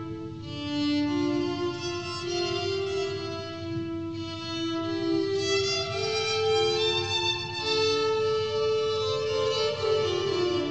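Electric violin bowed in long, slow held notes, with two or more notes sounding at once as the live-played line layers over looped violin phrases.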